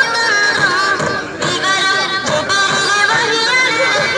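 Music: a voice singing a wavering, ornamented melody, in the style of a devotional song in praise of the Prophet.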